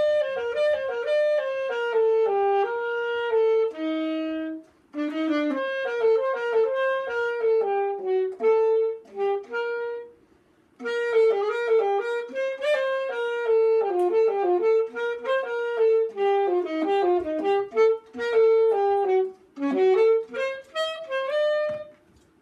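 Unaccompanied saxophone playing a quick-moving melody in phrases, with a short breath about five seconds in and a longer break about ten seconds in.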